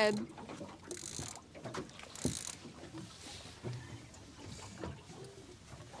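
Quiet handling noises on a small fishing boat deck while a fish is landed: two short rustles about a second apart, the second with a light knock, and faint clatter between them.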